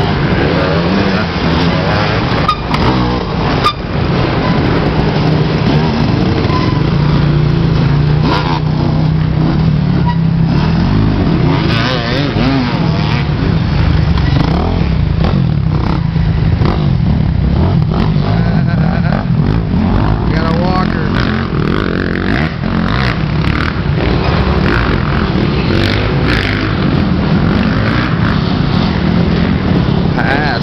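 Dirt bike engines running close by, their pitch rising and falling as riders throttle on and off through a tight wooded trail section, one bike after another with no break.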